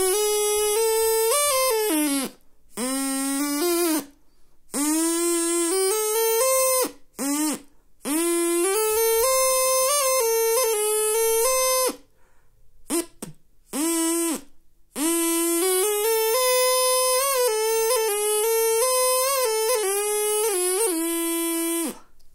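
Drinking-straw reed instrument with five finger holes, blown by mouth and played in several short phrases of stepped notes with brief pauses between them, the longest phrase near the end.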